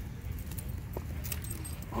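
A few light metallic jingles and clicks, as from dog collar tags and leash clips, while the leashed dogs move about, over a low steady rumble.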